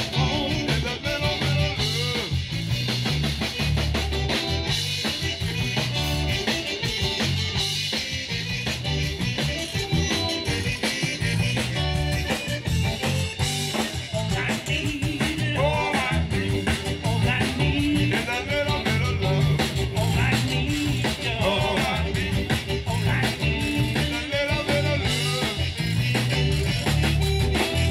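Live zydeco band playing through a stage PA: electric guitar, piano accordion and drum kit keeping a steady dance beat.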